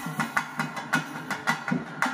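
Bambai drum pair beaten by hand in a steady, quick rhythm, about four strokes a second, each stroke with a short, low, ringing boom.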